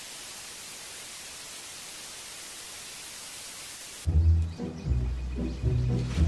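Analog TV static: a steady, even hiss of white noise. It cuts off suddenly about four seconds in, and low sustained music takes over.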